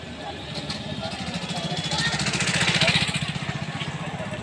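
Small motorcycle engine passing close by, its steady pulse growing louder to a peak about three seconds in, then falling away.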